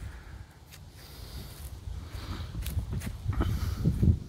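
Quiet outdoor ambience: a low, uneven rumble with a few soft rustles, as the phone moves over brush and grass.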